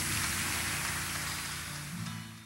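Audience applauding at the end of a song, a steady patter that slowly dies down, with the acoustic guitar's last chord still ringing faintly underneath.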